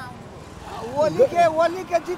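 A man speaking close to the microphone, starting under a second in, over a steady background of street traffic.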